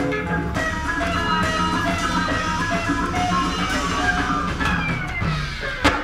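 Music with guitar and drums playing from a vinyl record on a turntable. It cuts off with a sharp click near the end.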